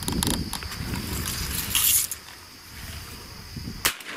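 Rustling and brushing noise as a hunter moves in the grass, then a single sharp shotgun shot near the end. It is the first shot of a double fired at a flock of teal coming into the decoys.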